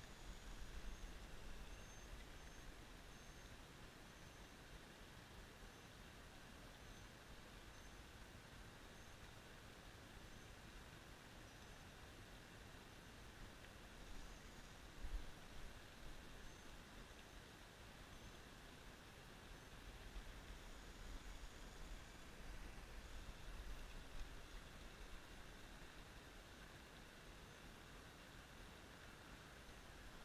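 Near silence: faint outdoor ambience by the water, with a faint high chirping that comes and goes and a few soft low bumps.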